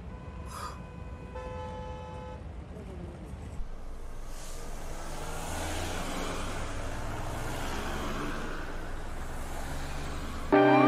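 Low rumble of a car and road traffic, with a short horn toot about one and a half seconds in. Then a broad hiss slowly grows louder.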